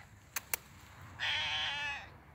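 A tabby cat meows once, a single call of under a second starting about halfway through. Two short sharp clicks come just before it.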